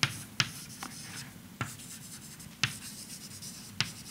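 Chalk writing on a blackboard: about six sharp, irregularly spaced taps as the chalk strikes the board, with faint scratching strokes between.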